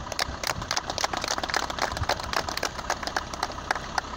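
A small group of people clapping their hands, many uneven claps a second.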